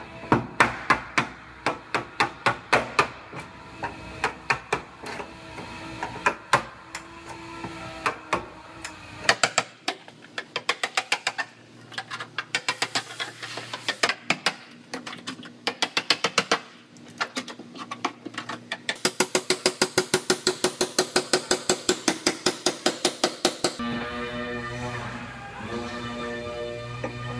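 Hammer striking a hand chisel driven into the spot-welded seams of a car's rear body panel, sharp metal-on-metal blows in runs, quickening to about six a second near the end. Background music plays underneath.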